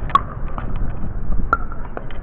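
Pickleball paddles striking a plastic ball during a rally: two sharp pops about a second and a half apart, with fainter clicks between, over a low background rumble.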